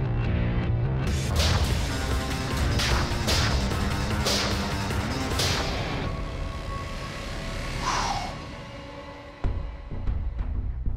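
Knife blade chopping and stabbing into galvanized steel trash cans: about five sharp metal strikes in the first half, followed by a falling swish, over dramatic background music.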